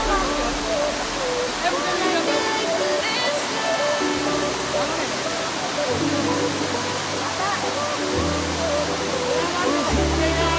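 Steady rushing of a waterfall, with a song playing over it: held notes and a bass line that change every second or two, and a singing voice.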